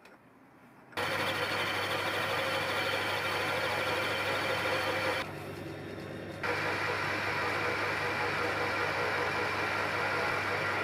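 Metal lathe running with a steady hum and hiss, coming in suddenly about a second in; it is turning a hexagonal stainless steel bar held in its three-jaw chuck. The higher part of the sound drops away for about a second in the middle.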